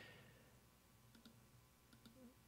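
Near silence with a few faint computer mouse clicks, about a second in and again near the end.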